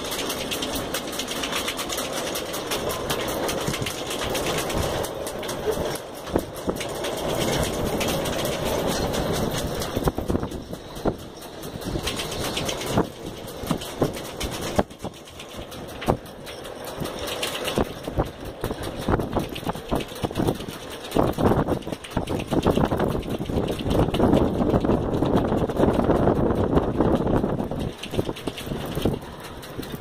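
Strong gusting wind buffeting the microphone and the boat's canvas enclosure, with many sharp flaps and knocks; the gusts grow louder in the last third.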